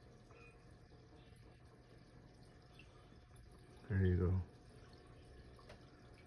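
Air-driven aquarium sponge filter bubbling and trickling steadily, over a faint low hum. A short voiced sound with a falling pitch cuts in about four seconds in.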